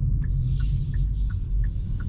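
Steady low road and tyre rumble inside the cabin of a Hyundai IONIQ 5 RWD electric car on the move, with no engine sound. A faint, regular ticking runs at about three ticks a second.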